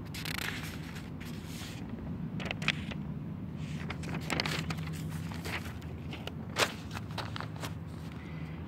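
Handling noise of a paper notebook and the recording phone: scattered rustles, light scrapes and clicks. Underneath is a steady low drone from a helicopter circling in the area.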